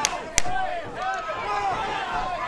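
Two sharp smacks at a cage-side MMA bout, the second and louder one less than half a second after the first, followed by voices shouting.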